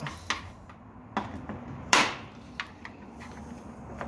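Plastic fender-flare clips being pried out of a Jeep body with a trim clip removal tool: a few sharp clicks and snaps, the loudest about two seconds in.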